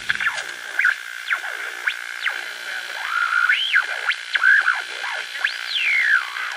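Electronic synthesizer outro: warbling pitch glides swooping up and down over a steady high tone, with a faint hiss underneath.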